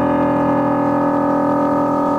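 A single keyboard chord held on a stage keyboard, its notes ringing steadily while the lowest ones fade away.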